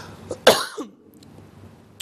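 A man coughs once, briefly, about half a second in, with his hand held to his mouth.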